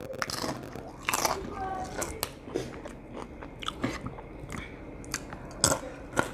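A person biting into a crisp tostada topped with carne con chile and chewing it, in a run of irregular loud crunches close to the microphone.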